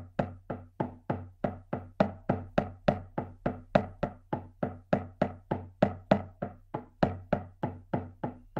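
A drum beaten in a steady, even rhythm of about four strokes a second: the continuous drumbeat used to carry a shamanic journey.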